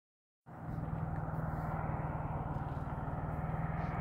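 Car engine idling steadily, heard from inside the vehicle; it comes in about half a second in.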